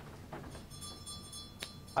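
A faint, steady, high ringing tone, like a small chime or bell, sets in just under a second in and holds, with a single small click a little later.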